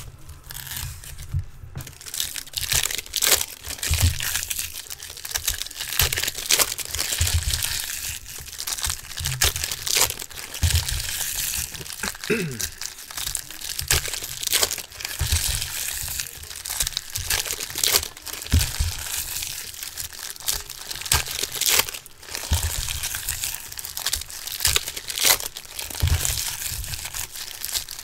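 2017 Bowman Chrome foil card packs being handled and torn open by hand: a continuous crinkling and crackling of the foil wrappers, with frequent sharp tears and rustles.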